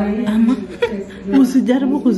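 A woman's voice chuckling and speaking, with no clear words.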